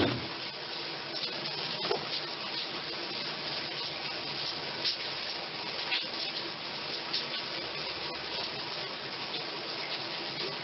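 Water running steadily in a tiled room, with a few faint clicks over it.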